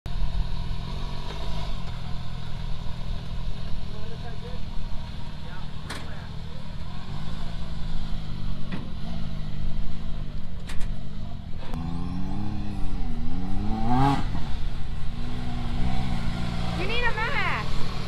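Can-Am Maverick X3 side-by-side's turbocharged three-cylinder engine running steadily at idle, its pitch rising and falling a couple of times past the middle of the clip as it is revved and moved. A few sharp clicks, and voices near the end.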